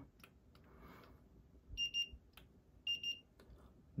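Handheld infrared thermometer gun beeping as it takes temperature readings off the back of a phone: two quick double beeps, high and clear, about a second apart.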